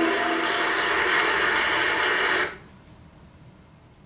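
A dense, hiss-like wash of sound from video playback that cuts off suddenly about two and a half seconds in, leaving faint room tone with a few small clicks.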